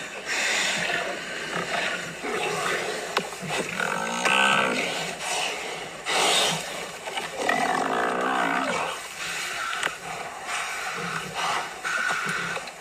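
Lions growling and snarling as they pull down a Cape buffalo. Two drawn-out calls rise over the growling, one about four seconds in and a longer one about eight seconds in.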